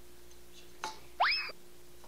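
A short click, then a quick rising slide-whistle-like "boing" sound effect with a high overtone, about a second in.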